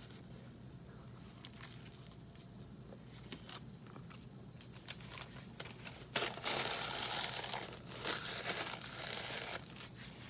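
A paper napkin being rustled and crumpled in the hands for about three seconds, starting about six seconds in, after a few faint light clicks.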